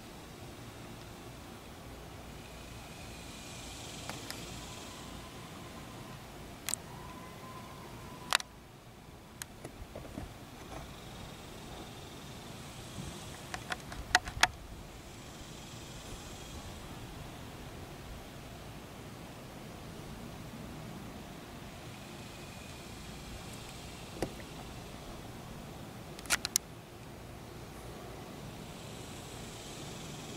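Outdoor background noise, steady and low, with faint hissy swells that come and go, broken by a few sharp clicks, some in quick pairs.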